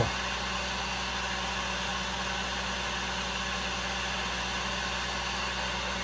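Steady, even hiss of air from a blower-type machine running, unchanging throughout.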